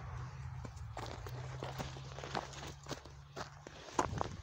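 Footsteps in snow, an irregular series of short steps, over a faint steady low hum that stops near the end.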